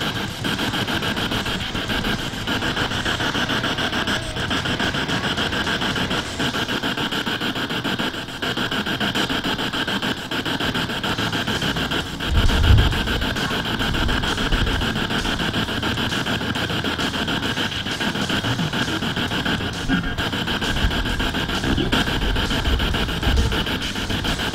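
Spirit box sweeping through radio stations: a steady hiss of static chopped into rapid fragments, with snatches of broadcast sound. A brief low bump about halfway through.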